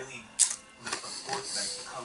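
Crunching into a Takis rolled tortilla chip: one sharp crack about half a second in, then crackly chewing.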